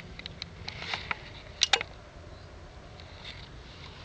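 Faint handling noise from a handheld camera being moved, with a low rumble and a few scattered short clicks, two sharper ones a little over a second and a half in.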